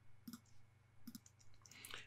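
Near silence, with a few faint clicks from a computer mouse as the wizard is advanced.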